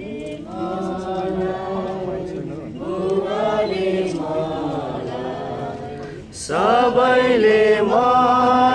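A group of voices singing a Nepali hymn together in long, drawn-out sung phrases. It gets louder from about six and a half seconds in.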